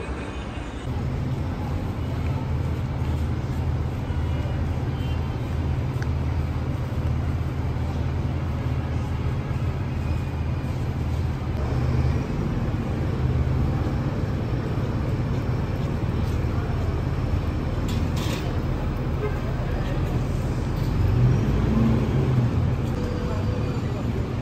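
Tour coach's diesel engine running with a steady low hum, amid street traffic.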